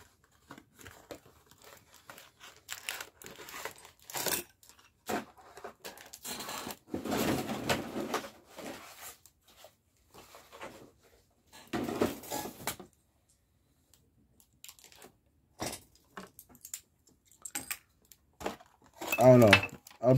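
Packaging and trading cards being handled: crinkling, rustling and tearing come in scattered bursts, with a few light clicks and taps. Near the end, plastic game tokens are set down on a playmat.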